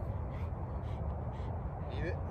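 A bird calling over and over, short calls about twice a second, over a steady low rumble.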